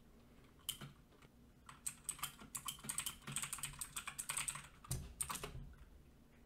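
Typing on a computer keyboard: a quiet run of key clicks, a few scattered at first, then a steady quick patter from about two seconds in that stops shortly before the end.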